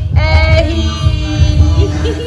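Music: a song with long held sung notes over a pulsing bass beat, the vocal line breaking off and starting a new note right at the start.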